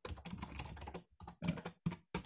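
Typing on a computer keyboard: a quick run of keystrokes with a brief pause about a second in.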